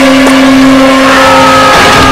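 Loud, effects-processed cartoon soundtrack audio: a steady held tone, with a higher tone gliding slightly downward in the second half.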